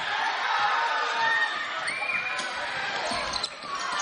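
Basketball game in a gymnasium: a ball bouncing on the hardwood court, with background voices of players and spectators.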